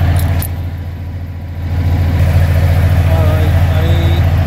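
Semi truck's diesel engine idling steadily, with a couple of sharp clicks shortly after the start as an air-line fitting is worked open with a wrench.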